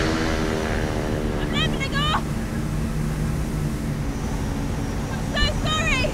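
A Tiger Moth biplane's engine running steadily in flight, heard from the open cockpit.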